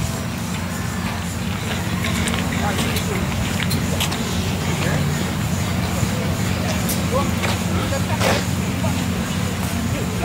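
Steady low rumble of road traffic, with faint voices now and then.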